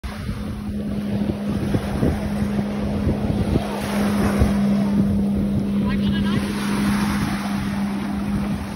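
Steady drone of a motorboat engine on the water, with wind buffeting the microphone and small waves washing onto the sand.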